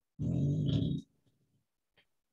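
A person's short, low voiced sound, under a second long.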